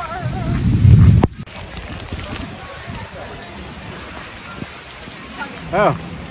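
Heavy rain pouring down onto pavement, a steady hiss. For about the first second a loud low rumble sits on the microphone, then cuts off suddenly.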